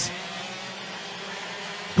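Racing karts with IAME X30 125cc two-stroke engines running at speed on track, a steady drone heard under a pause in the commentary.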